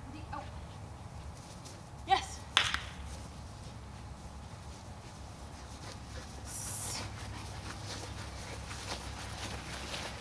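A person's voice in two short calls, about half a second apart, a couple of seconds in, over a steady low rumble.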